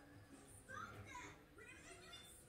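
Faint high-pitched voice in a quiet room, a couple of short bits of child-like speech or vocalising about a second in and near the end.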